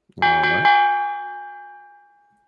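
A bell struck twice, about half a second apart, ringing on and fading away over about two seconds. It marks the end of an on-screen countdown.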